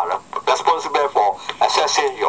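Speech only: a voice talking without a break, with a thin, radio-like sound.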